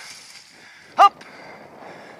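A dog barks once, a single short bark about a second in, over a steady background rush.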